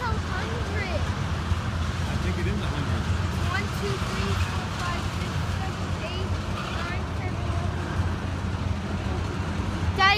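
Freight train of tank cars rolling past at steady speed, a continuous low rumble with no let-up.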